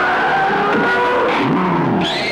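Film soundtrack: several held, pitched tones sliding up and down in pitch, with one low tone swelling up and falling back about one and a half seconds in.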